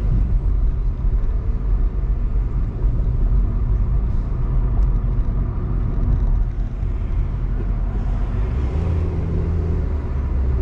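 Steady low rumble of a car being driven on a city street: engine and road noise.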